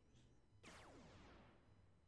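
Near silence: room tone, with one faint falling whoosh starting about half a second in.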